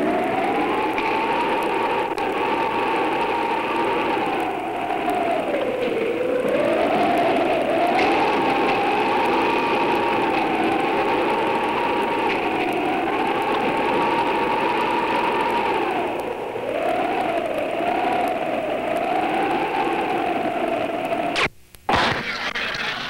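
A steady hiss with a wavering whine over it, its pitch drifting slowly up and down and dipping a few times. It cuts out briefly near the end.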